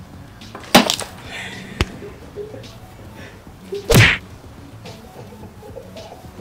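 Three sharp knocks, about a second, two seconds and four seconds in, the last a fuller, louder thud: a plastic water bottle hanging on a string, swung and striking a person and the things around them.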